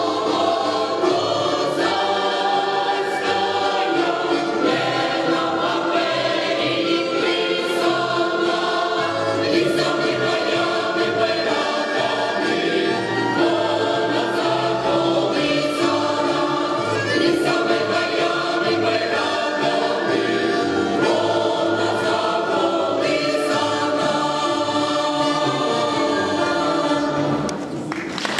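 Mixed folk choir of women and men singing a Ukrainian folk song in harmony, accompanied by a button accordion and double bass.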